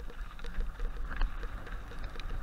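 Mountain bike riding down a snowy trail, heard from a camera on the rider: a steady low wind rumble on the microphone with scattered clicks and rattles from the bike and its tyres on the snow.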